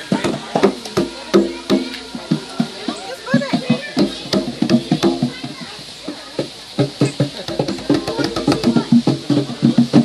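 Djembe hand drum struck with bare hands in irregular beats that grow busier and louder over the last few seconds, with voices alongside.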